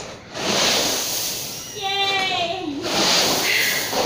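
Dry shelled corn kernels pouring and sliding in a hissing rush as they are heaped over a person lying in the grain, in two spells with a lull between. A brief high-pitched voice sounds in the middle.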